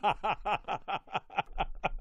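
Hearty male laughter: a quick run of short "ha" pulses, about six a second.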